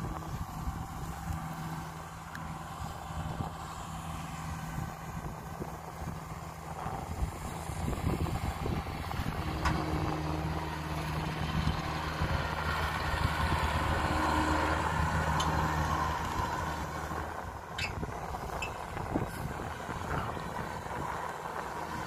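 Kubota DC-105X combine harvester running as it drives closer, a steady diesel engine hum with machinery noise that grows louder. The hum drops away a few seconds before the end.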